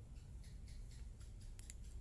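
Faint, quick ticks and rustles of a metal crochet hook and thin cotton thread being handled and worked, starting about a third of a second in, over a low steady hum.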